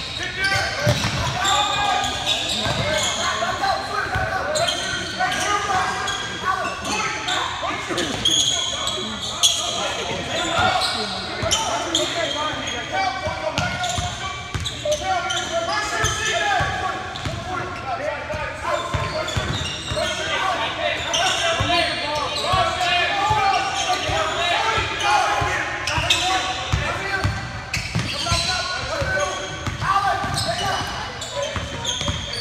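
Basketball dribbled on a hardwood gym floor, with short high sneaker squeaks, under a steady hubbub of indistinct voices from spectators and players in the gymnasium.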